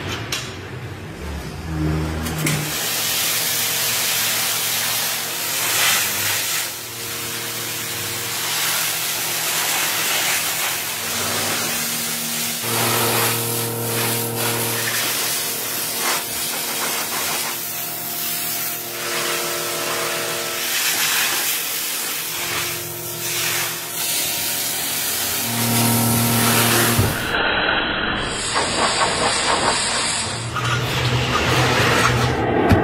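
Hand-held gas torch blasting over a cow's head to singe off the hair, a loud steady rushing hiss with a low hum that swells and fades. The hiss cuts off about three seconds before the end.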